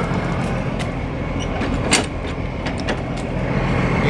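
Semi truck's diesel engine idling, a steady low hum, with a sharp click about halfway through.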